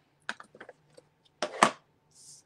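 A few light taps as a clear acrylic stamp block is inked on an ink pad, then a louder double plastic clack about one and a half seconds in as the ink pad case is handled.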